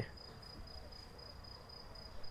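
Faint, steady, high-pitched pulsing tone over a low room rumble.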